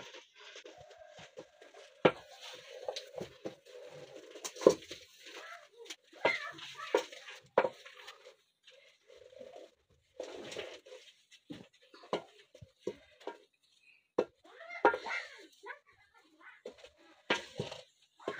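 Wooden spoon stirring and pressing a thick, stiff white porridge in a metal pot, with sharp knocks of the spoon against the pot at irregular intervals.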